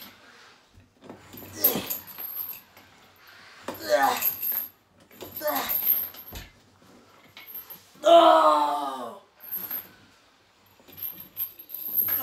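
A man's strained grunts and groans of effort during slow, heavy leg-extension reps: four short vocal bursts a couple of seconds apart. The loudest and longest comes about eight seconds in and falls in pitch.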